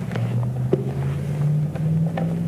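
A steady low hum that steps to a new pitch a couple of times, with a few light clicks from a Bible being handled.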